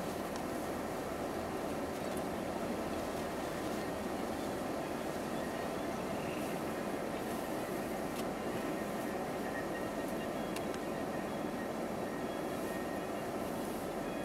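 Steady hum inside a car's cabin as it sits idling in stopped traffic: engine and road-cabin noise with no sudden events.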